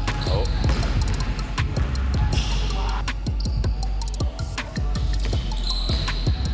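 A basketball being dribbled on a hardwood court, several irregular bounces a second, over background music with a steady deep bass.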